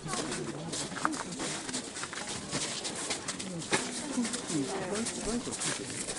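Crowd of onlookers talking, many voices overlapping in a steady murmur, with frequent small clicks throughout.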